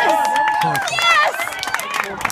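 Spectators yelling and cheering a base hit, with long drawn-out shouts and a higher voice rising and falling about a second in, over a few scattered claps.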